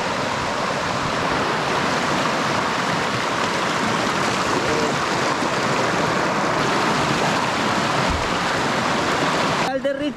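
Fast-flowing, swollen rocky creek rushing over stones close by: a loud, steady rush of water. It cuts off suddenly near the end.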